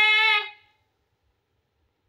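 A woman's long, loud shouted call of a name, held on one pitch and ending about half a second in; the rest is near silence.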